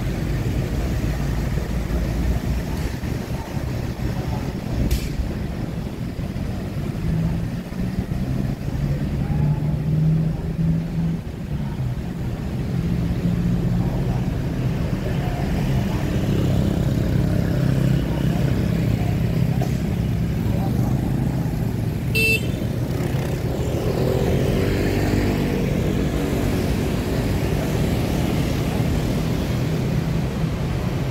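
Vehicle and road noise from driving through city traffic: a steady low rumble, with other traffic passing and a short, high horn-like beep about three-quarters of the way through.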